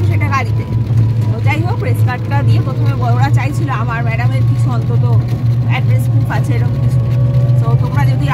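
Steady low engine drone of a small open passenger vehicle under way, with a woman talking over it.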